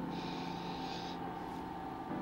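A soft breathy hiss lasting about a second, over a steady low hum of room tone.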